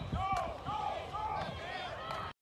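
A spectator shouting the same call over and over, about every half second, with a few dull thumps near the start.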